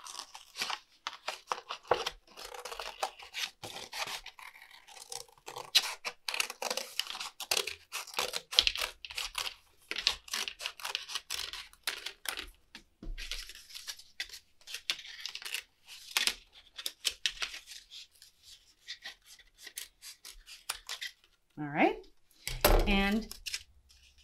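Scissors cutting through a paper plate: a long run of crisp snipping and tearing crackles as the centre is cut out. The cutting stops about 21 seconds in.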